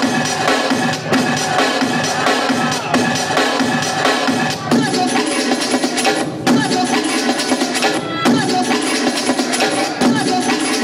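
Music from a vinyl record played by needle drop: the tone arm is set down by hand on chosen spots, so short phrases of a drum-led track play and then cut off abruptly and restart, about every second and a half in the second half.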